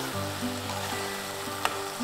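Background music of sustained, slowly changing notes over a faint steady sizzle of minced chicken frying in the pan, with a single click about a second and a half in.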